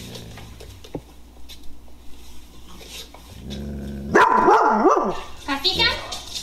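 A dog's loud wavering whine-howl about four seconds in, its pitch rising and falling three times over about a second, after a quieter stretch.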